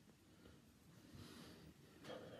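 Near silence: room tone with a faint breath about a second in.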